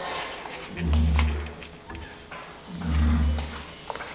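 A French bulldog's heavy, snoring breathing: two long low rasping breaths, about a second in and about three seconds in, with faint small clicks between them. This noisy breathing is typical of the breed's short muzzle.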